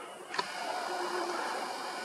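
A single light click about half a second in, from handling the camera, over a faint steady background hiss.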